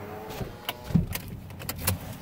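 Car cabin noise while driving: a steady low rumble, broken by several sharp clicks and rattles and a low thump about a second in.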